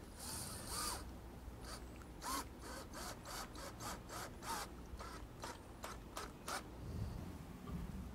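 Cordless drill driving a pocket-hole screw to join two panel edges: a short high whir, then a quick series of faint clicks, about four a second, with a brief pause partway.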